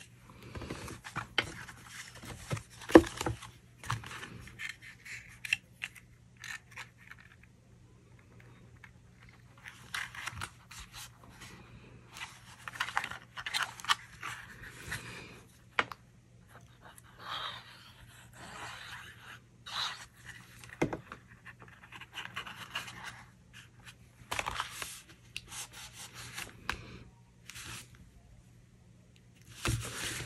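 Cardstock being handled, folded and pressed on a glass craft mat: scattered paper rustles and scrapes with a few light taps, over a faint steady electrical hum.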